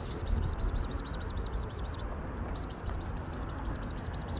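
Rapid high-pitched chirping, about ten short pulses a second, in two runs broken by a brief pause about two seconds in.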